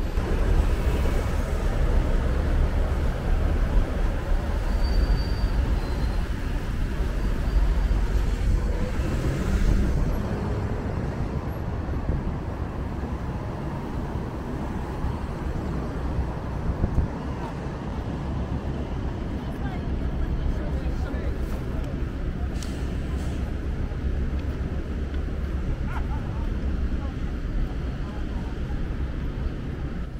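City street traffic: cars passing through the intersection, a steady rumble that is a little louder in the first ten seconds, with voices of people nearby.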